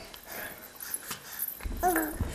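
An infant vocalizing: a short, pitched coo near the end, with a low rumble underneath.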